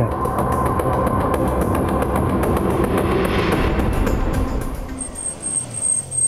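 Dramatic soundtrack transition effect: a dense rattling noise with rapid clicks. It dies down about four seconds in, when a high thin tone comes in.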